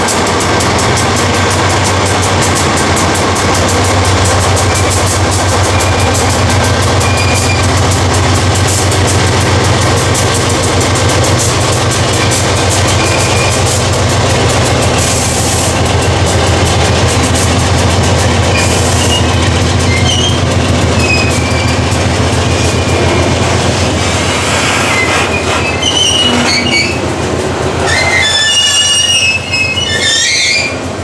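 Freight train passing at close range: a diesel locomotive's engine drone with rolling stock going by. About three-quarters of the way in, the drone fades and the wagon wheels squeal in high, wavering tones.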